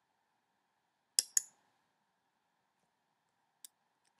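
A computer mouse button clicked twice in quick succession, then once more faintly near the end.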